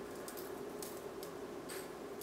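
Faint scattered ticks of crushed candy cane bits sprinkled by hand onto a pretzel rod on parchment paper, over a steady low hum.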